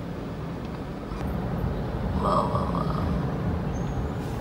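Honda Civic driving in city traffic, heard from inside the cabin as a steady low engine and road rumble that grows a little louder about a second in. A faint pitched sound rises above it midway.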